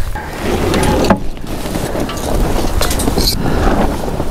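A plastic tarp being pulled off a sawmill, rustling, with a few sharper crinkles, and wind on the microphone.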